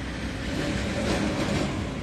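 Steady outdoor background noise with a low rumble, typical of street traffic or wind on a phone microphone.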